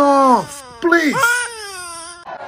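A woman crying aloud in two long wails that fall in pitch, the second starting just under a second in.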